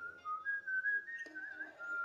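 A whistled melody: one thin, pure tone stepping up and down between notes and wavering slightly on each.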